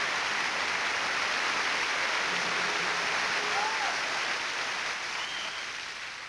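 Large concert audience applauding steadily, with a couple of faint whistles or calls, the applause starting to fade down near the end.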